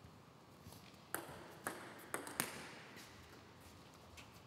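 Celluloid-type table tennis ball bouncing: four sharp, ringing ticks, the first three about half a second apart and the last quicker.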